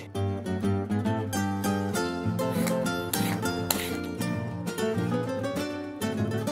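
Background music of plucked strings, a guitar-like instrument picking a run of notes at a steady pace.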